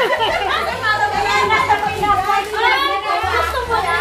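Overlapping chatter of several women talking and exclaiming at once, with no single voice standing out.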